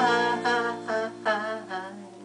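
A man singing a sustained, wavering melodic line, accompanied by an acoustic guitar whose chord rings on and fades toward the end.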